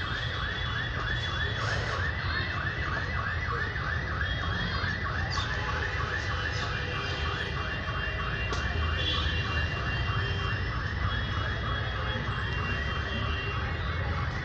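An electronic alarm warbling in a fast, even, unbroken repeat several times a second, over a steady low rumble.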